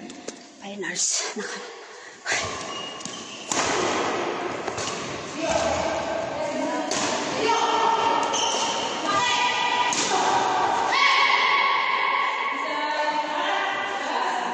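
Badminton rally in an echoing sports hall: sharp knocks of rackets hitting the shuttlecock and thuds of feet on the court, with voices calling.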